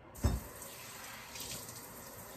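Kitchen faucet running in a steady stream as water is drawn for the recipe, after a brief knock about a quarter second in.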